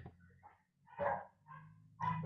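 A dog barking in the background: a short bark about a second in and a fainter one just after, over a low steady hum.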